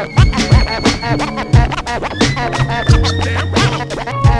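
Hip-hop beat with a DJ scratching a record on turntables over drums and a bassline.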